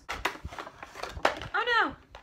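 A cardboard toy-figure box being opened and its figure pulled out: a quick run of clicks and crackles from the packaging for about a second. Near the end comes a short vocal "ooh".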